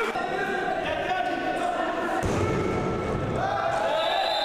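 Sports-hall ambience during a futsal match: crowd sound with a steady held tone, and dull thuds of the ball on the court a little past halfway.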